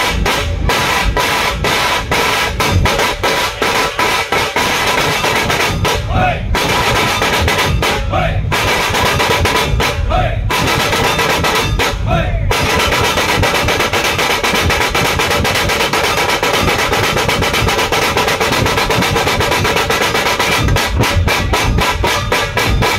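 Dhol-tasha drum troupe playing loudly: several large barrel dhols beaten with sticks under a fast, continuous roll of tasha drums. The sharp tasha strokes drop out for a moment four times, about every two seconds, in the first half, then run on without a break.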